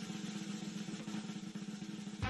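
A fast, steady snare drum roll, a game-show sound effect held at an even level.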